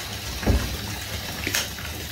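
Tap water running steadily into a filling bathtub, the stream splashing into the water and bubble bath as foam builds. A short thump about half a second in and a sharp click near the end stand out over it.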